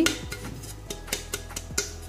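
A round metal cake tin being tilted, turned and tapped in the hands to spread flour over its greased inside: a string of light, irregular taps and knocks on the tin.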